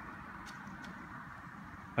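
Faint, steady road ambience with a car driving away into the distance. There are a couple of faint clicks in the first second.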